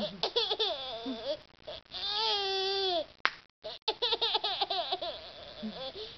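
A 14-month-old toddler laughing: quick giggly bursts, then a long high squeal of laughter, then more giggles. She is laughing at chewing gum being snapped, and a single sharp gum snap sounds about three seconds in.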